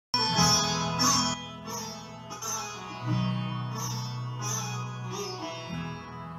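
Instrumental backing music: a run of plucked string notes over a steady low drone, before any singing.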